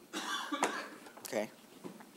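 A person coughing and clearing their throat in two short bursts about a second apart.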